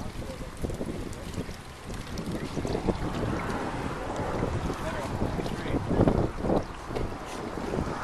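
Water splashing and sloshing as salmon smolts are netted and shifted in mesh baskets through tubs of water, with wind rumbling on the microphone; a louder burst comes about six seconds in.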